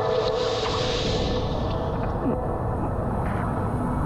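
Pool water rushing and splashing around an action camera riding at the water surface, with a bright hissing spray in the first second and a half that settles into a lower, rougher wash.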